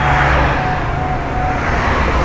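Road traffic noise: a motor vehicle running and passing close by, a steady noise without a break.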